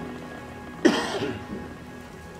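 Background music with sustained tones; about a second in, a single short, loud vocal cry that falls in pitch and quickly dies away.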